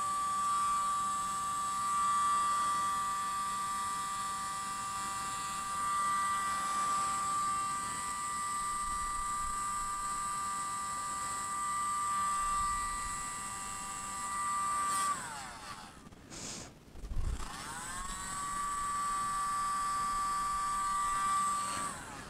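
Tiny handheld electric mini leaf blower running with a steady high motor whine as it blows wet acrylic paint across a canvas. About fifteen seconds in it is switched off and winds down, then about three seconds later it is switched on again, winds back up to the same pitch and runs until it stops at the end.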